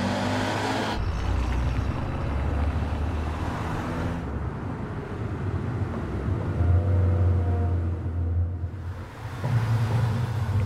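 A car's engine running as it drives, a steady low rumble with road noise, and a held engine note rising about seven seconds in.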